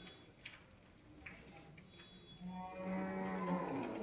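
A long, steady-pitched animal call lasting under two seconds, starting about two and a half seconds in, with a few faint clicks before it.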